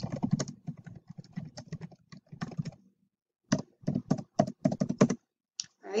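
Typing on a computer keyboard: a quick run of key clicks, a pause of under a second about halfway through, then a second run of keystrokes.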